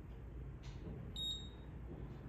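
A single short, high-pitched electronic beep from a Tanita body composition analyzer during a whole-body measurement, over a steady low room hum.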